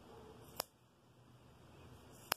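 One sharp snip of scissors cutting through looped yarn, a little over half a second in.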